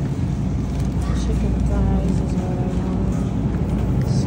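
Supermarket ambience: a steady low hum, with faint voices of other shoppers about halfway through.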